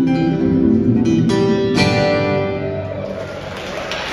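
Solo acoustic guitar strummed, with the last strokes about a second and a half in and the closing chord left ringing and fading. Applause starts near the end.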